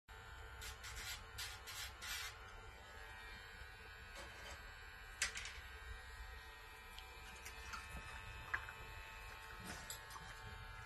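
Cordless rotary dog-nail grinder (Dremel-type) running with a steady whine, with several short louder grinding bursts in the first two seconds. A sharp click about five seconds in.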